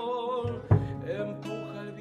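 Man singing a folk song over a nylon-string classical guitar: a held note with vibrato, then a sharp strummed chord about two-thirds of a second in as the singing goes on.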